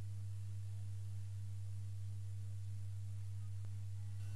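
Steady low electrical hum, typical of mains hum, on a blank stretch of the recording, with a faint buzz above it that pulses about three times a second.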